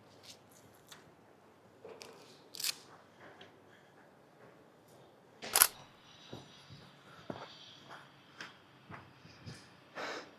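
Footsteps crunching on a dirt path, with light knocks and clicks of cricket kit, in an uneven walking rhythm. The loudest crunch comes about halfway through.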